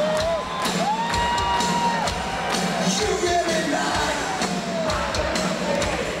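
Live rock band playing through a large PA, heard from within the audience: steady drums under a gliding, then held melodic line, with the crowd cheering and whooping.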